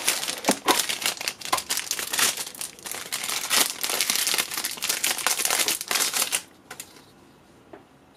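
Clear plastic bag crinkling as hands pull the motherboard's metal I/O shield out of it. The rustling stops about six and a half seconds in, followed by a few faint clicks.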